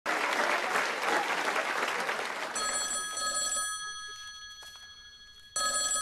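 Studio audience applauding, then a telephone rings twice. The first ring starts about two and a half seconds in and slowly fades; the second starts near the end.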